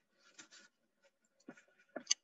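Near silence, with a few faint, brief small noises.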